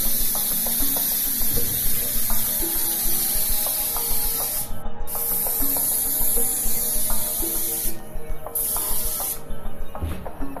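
Compressed-air gravity-feed spray gun spraying paint onto steel furniture frames as a steady high hiss. The trigger is released briefly about five seconds in and again around eight seconds, and the spraying stops shortly before the end.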